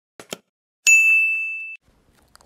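Subscribe-button sound effect: two quick clicks, then a single bright bell ding that rings for about a second and stops abruptly.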